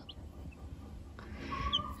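Baby chicks peeping: a few short, high peeps, one just after the start and a couple more near the end.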